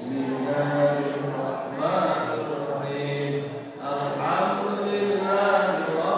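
A man's voice chanting a melodic recitation from a written text, with long held notes and short pauses for breath between phrases.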